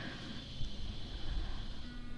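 Low, steady background noise with no distinct sound events.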